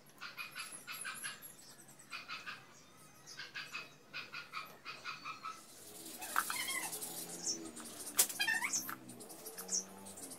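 Faint high-pitched animal calls: groups of short rapid squeaks through the first half, then longer wavering cries, with a sharp click about eight seconds in.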